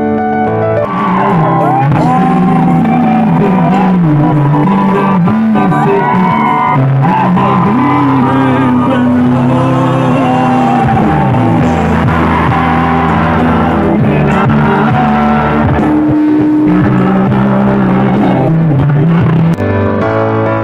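Loud live band music with a singer, with steady piano music briefly before it starts about a second in and again near the end.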